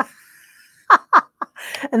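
A woman giggling: two short, high vocal sounds about a second in, each falling in pitch, then a breath just before she speaks again.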